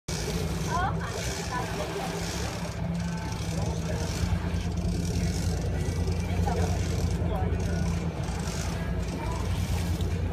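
Sport-fishing boat's engine running steadily with a low drone.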